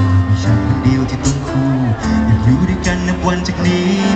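Live band music: a male singer's vocal over electric guitar and drums.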